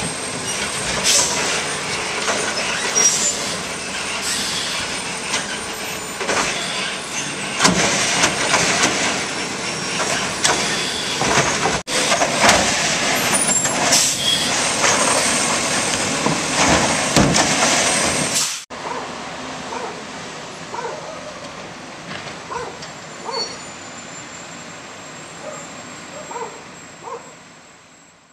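Automizer automated side-loader garbage truck working the curb: engine and arm running, with several sharp bangs as carts are handled and dumped. About two-thirds of the way through the sound cuts suddenly to a much quieter street, the truck now farther off.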